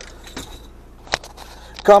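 A few sharp clicks and knocks from handling the phone, about half a second and just over a second in, over a low steady hum inside a parked car's cabin; a man's voice starts near the end.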